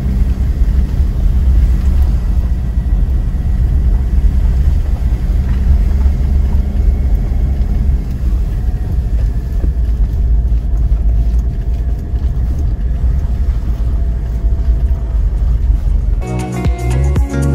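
Ford Endeavour SUV driving along a snow-covered road: a steady low rumble of engine and road noise.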